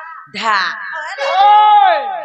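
A woman's high, amplified singing voice crying out in drawn-out wailing syllables, ending in one long held note that rises and then falls.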